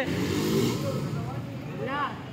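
A motorcycle passing along the street, its engine noise loudest in the first second and then fading.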